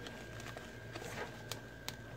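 Faint handling of a nylon plate carrier's cummerbund and its quick-release buckle tubes as the tubes are slid on. A soft rustle comes about a second in, followed by a couple of light clicks.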